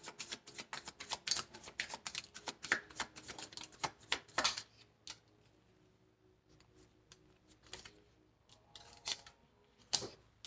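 A deck of tarot cards being shuffled by hand: a quick run of crisp, rapid card clicks for about four and a half seconds, then it goes quiet but for a few soft card sounds near the end.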